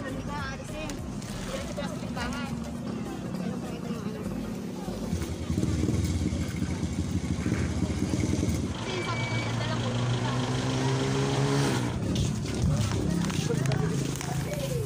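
Motorcycle tricycle engine running, louder from about five seconds in, then its pitch falling as it slows, with voices around it.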